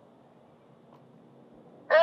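Faint steady background hiss, then near the end a short, loud, high-pitched vocal sound that bends in pitch.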